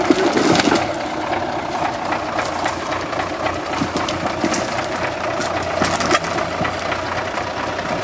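GAZ-66 truck's V8 petrol engine running steadily as the truck crawls over a pile of logs, with a few sharp knocks and cracks from the wheels and chassis on the wood.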